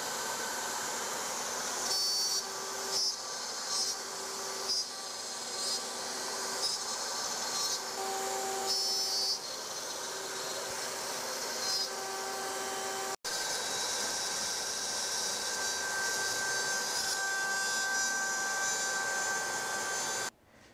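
A CNC-mounted trim router spindle runs with an eighth-inch spiral bit, milling a pocket into a walnut blank, a steady high whine under the hiss of the dust-collection hose. The cutting noise swells and eases repeatedly as the bit passes through the wood.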